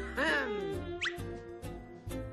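Cartoon score music over a steady bass, with a short squeaky sound gliding down in pitch at the start and a quick rising whistle about a second in.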